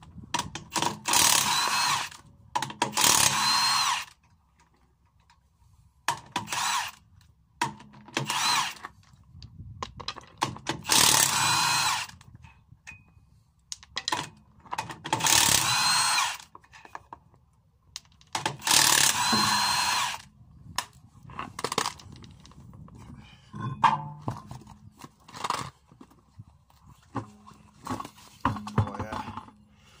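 Cordless impact wrench undoing a van's wheel nuts, running in repeated bursts of a second or two each, about eight in all, with softer knocks between them near the end.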